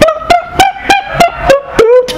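Human beatboxing: sharp percussive mouth hits, about three to four a second, over a held vocal tone that bends in pitch.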